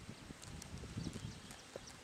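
Faint outdoor background of irregular low thumps and rumbling, with a few faint high clicks scattered through it.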